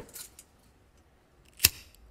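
A few faint clicks at the start, then a single sharp, loud click shortly before the end.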